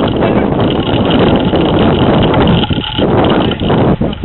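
Wind rumbling on the microphone: a loud, steady noise that covers the sounds of play, easing briefly near the end.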